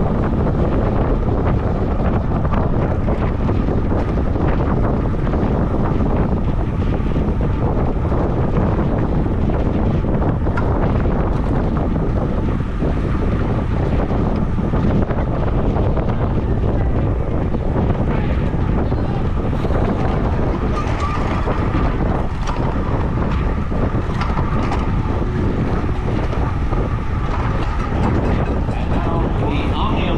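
Steady wind rush buffeting the microphone of a camera on a road bike moving at about 23 mph.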